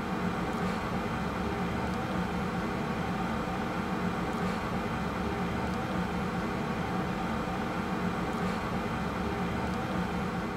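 Steady aircraft flight-deck background noise: an even low hum with a rushing hiss that holds at one level throughout.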